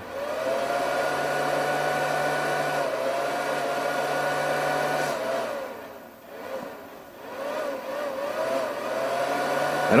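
Power inverter's cooling fan running with a steady, slightly wavering whir. It dies away a little past halfway and starts back up about a second later. The fan is cycling on and off because the heater draws only about 100 watts, a light load.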